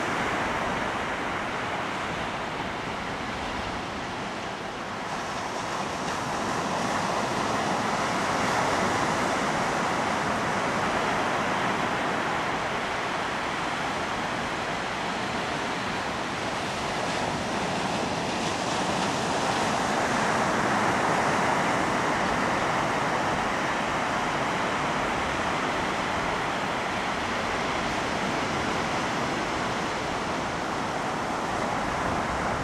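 Ocean surf washing onto a sandy beach: a steady rush of noise that swells and eases slowly, loudest about a third of the way in and again about two-thirds through.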